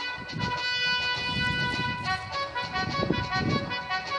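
Instrumental backing track of a song playing held chords between sung lines, with a low rumble swelling underneath toward the end.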